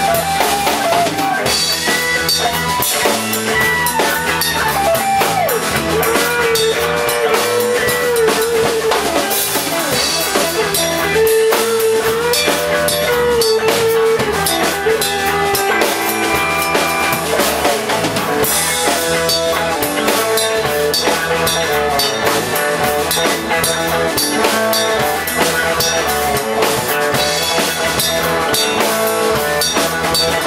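Live rock band playing loudly: a drum kit keeps a steady beat while an electric guitar holds and bends long lead notes over it.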